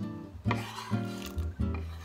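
Background music with guitar, and about half a second in a knife scraping across a wooden cutting board as diced raw potato slides off into a pot of water.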